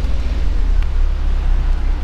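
Wind buffeting the microphone: a steady low rumble with a faint hiss above it, no other distinct sound standing out.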